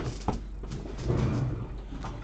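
A cardboard hobby box of trading cards set down and slid across a desk mat: a sharp knock at the start, then a scuffing slide.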